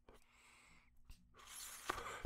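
Near silence: a pause between spoken phrases with only faint breath noise.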